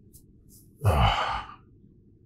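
A man sighing heavily once, a breathy exhale with a low falling voice, about a second in.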